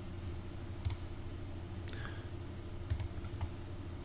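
About five faint computer mouse clicks, scattered over a few seconds, over a low steady hum.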